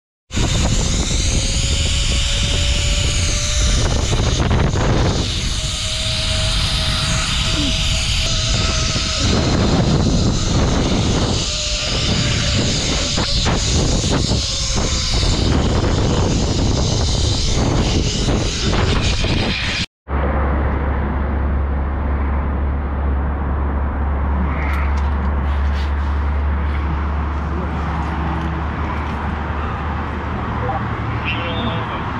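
Zipline trolley running along a steel cable, with wind rushing over the microphone: a loud whirring rush with a faint steady whine. It cuts off abruptly about twenty seconds in, and a steadier low rumble follows.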